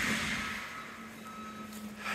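Forest mulcher running at a distance, a low steady hum, with a high steady tone of its backup alarm coming in about half a second in.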